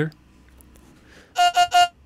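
A vocal sample played as a synth lead through Ableton's Sampler, its attack just softened: three short repeated notes at one pitch, about a second and a half in, after a near-silent start.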